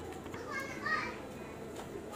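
A child's voice in the background: a short high-pitched call or babble about half a second in, over a low background hum.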